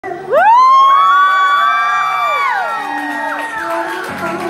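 Concert audience screaming and whooping: several high voices rise sharply at once, hold long loud screams, then glide down and trail off. Steadier musical tones begin faintly near the end.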